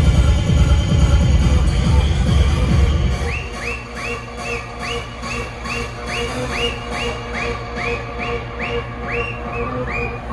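Hardcore techno played loud over a club sound system. A pounding bass kick runs for about the first three seconds, then the bass drops away into a breakdown where a high, whistle-like synth note swoops upward about twice a second.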